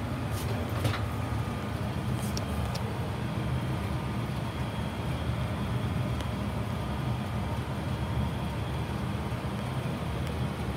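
A furnace running with a steady low hum, with a few faint clicks in the first three seconds.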